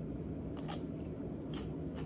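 Raw radish being bitten and chewed, with a few crisp crunches about half a second and a second and a half in.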